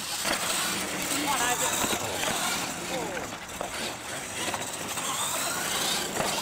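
Radio-controlled monster trucks racing flat out on pavement right after the launch, their motors and tyres making a steady noise, with voices in the background.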